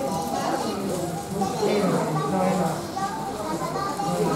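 Indistinct chatter of several people talking at once, children's voices among them.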